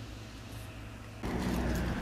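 Faint steady indoor hum that, a bit over a second in, cuts abruptly to louder city street noise with a low traffic rumble.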